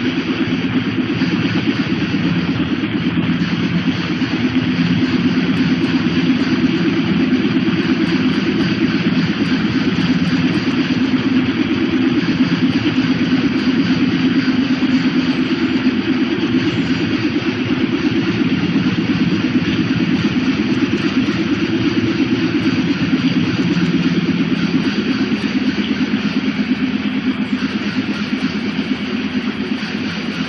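Experimental noise music: a dense, unbroken drone made of a heavy low rumble with a fast flutter in it, under a steady wash of hiss, with no beat or melody.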